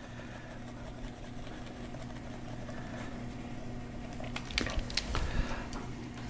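Quiet room tone with a steady low electrical hum. A few faint clicks and taps come about four to five and a half seconds in.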